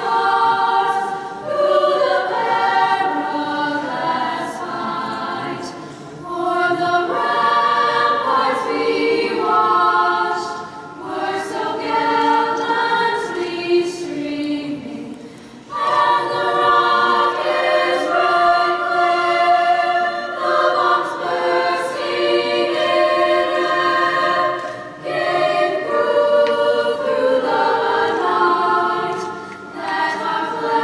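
A high school choir singing together in long held phrases, with short breaks for breath between phrases.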